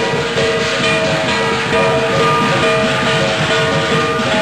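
Chinese lion dance percussion playing loud and without pause: a big drum with clashing cymbals and gongs, their metallic ringing tones sustained over the din.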